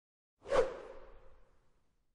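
Whoosh sound effect for a logo animation: a quick swelling swish about half a second in that fades away over about a second, with a faint held tone trailing under it.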